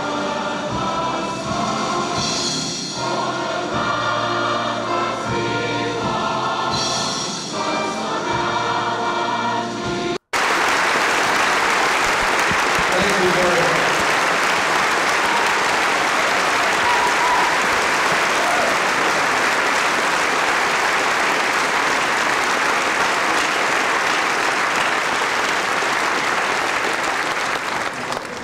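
A choir singing with instrumental accompaniment, cut off abruptly about ten seconds in. Then a large audience applauds steadily and loudly for the rest of the time.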